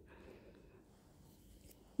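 Very faint room tone with no distinct sound: a pause between narrated lines.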